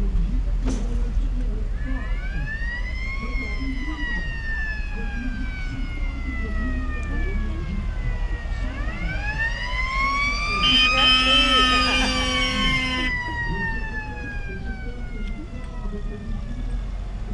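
A mechanical siren winds up twice, each wail rising over about a second and then slowly falling away over several seconds. During the second wail a horn sounds steadily for about two seconds. Vintage jeep engines run underneath.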